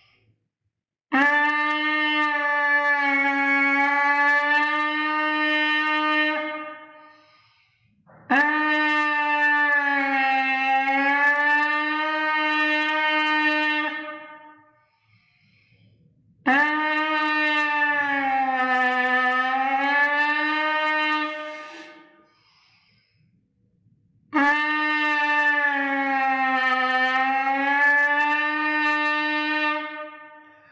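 Trumpet leadpipe buzz: lips buzzing into the mouthpiece seated in the trumpet's leadpipe, giving a raspy, buzzy pitched tone. It comes as four long held notes, each bent down in pitch and brought back up, with bends of up to about a tone and a half. Each note fades into a strong room echo.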